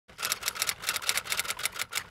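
A quick, uneven run of sharp clicks, about six a second, like rapid typing.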